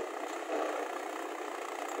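Mahindra tractor's diesel engine running steadily.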